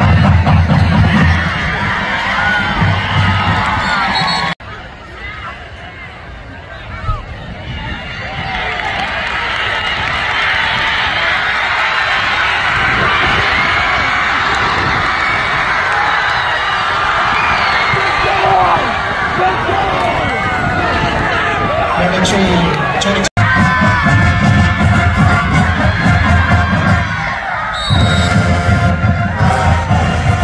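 Stadium crowd at a high school football game cheering and shouting. It builds to a sustained roar during the middle stretch, then cuts off abruptly. A marching band plays in the stands at the start and again near the end, under the crowd noise.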